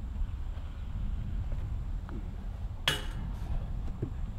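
A putter disc strikes a metal disc golf basket about three seconds in: one sharp metallic clink with a brief ring, over a steady low rumble.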